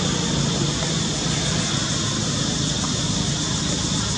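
Steady outdoor background noise, a constant rumble and hiss with no distinct events.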